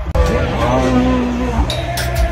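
A bull bellowing: one drawn-out call of over a second that wavers in pitch, starting just after a sudden cut, with music underneath.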